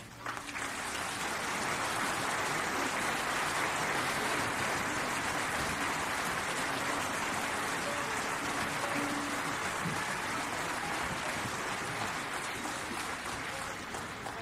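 Concert audience applauding steadily after the orchestra's closing chord, the applause fading away near the end.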